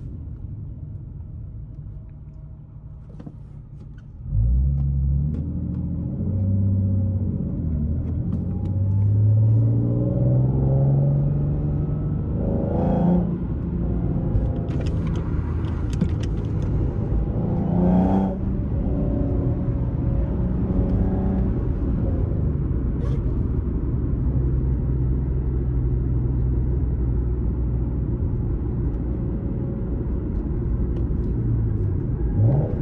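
Modified Nissan 370Z's 3.7-litre V6, heard from inside the cabin, running at a low rumble. About four seconds in, it comes on loud and its note climbs as the car accelerates. The note breaks twice in the middle, then settles into a steady loud drone at speed.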